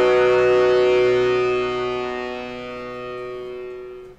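Closing chord of a rock song on electric guitar, held and slowly dying away in steps until it stops.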